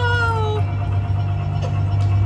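A person's long excited whoop, rising and then held, sliding slightly down in pitch and ending about half a second in, over a steady low hum.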